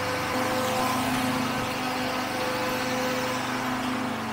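A motor engine idling, a steady hum at a constant pitch.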